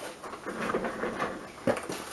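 Paper packaging and paper shred rustling as items are lifted out of a mail package, with one light tap near the end.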